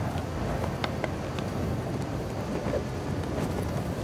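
A steady low rumble with a few faint clicks over it.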